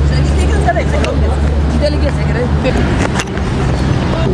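Several people talking over one another, with a steady low rumble underneath.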